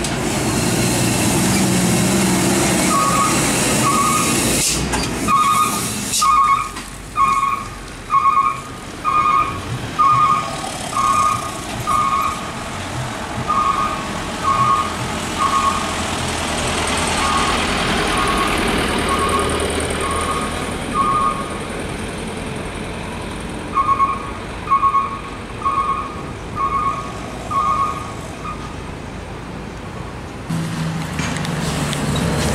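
Heavy truck engine running as it passes close by, with a short hiss about five seconds in. Then a truck's electronic warning beeper sounds in long runs of regular beeps, a little more than one a second, over engine noise.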